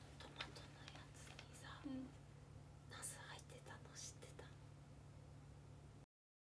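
Near silence: faint whispering and breathy sounds from a person close to the phone's microphone, a few soft bursts around the middle, over a steady low electrical hum.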